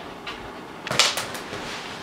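A short burst of rustling and clicking about a second in: handling and body-movement noise as a person shifts on a leather couch and reaches for things.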